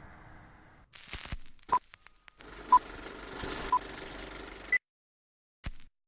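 Edited intro sound effect: a crackling hiss with short electronic beeps once a second, three at one pitch and a fourth higher, like a countdown. It cuts off abruptly, followed by a single click.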